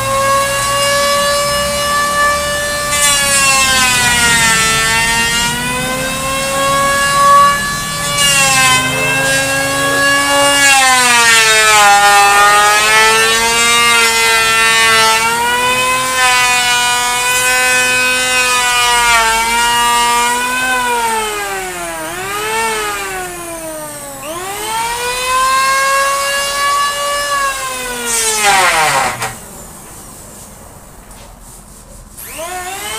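Electric hand planer shaving a wooden board: the motor whines steadily, its pitch sagging each time the blades bite into the wood and climbing again between passes. Near the end it is switched off and winds down to a stop.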